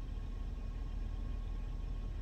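Steady low hum of a car cabin in a pause between words, with nothing else happening.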